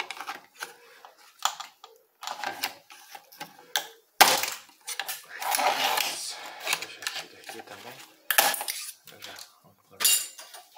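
A computer motherboard being handled on a workbench: irregular clatter and metallic rattles, with sharp knocks about four seconds in and again near the end as the board is tipped and set down.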